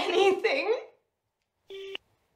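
A woman speaking briefly, then near the end a short electronic beep from a mobile phone, about a third of a second long, steady in pitch and cutting off abruptly.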